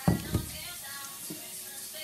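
Frying pan set down on the stove with two quick knocks, then the faint steady sizzle of onion and garlic frying.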